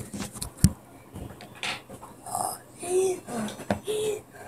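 Breathy, half-whispered voice sounds in short bursts, with a couple of sharp clicks in the first second.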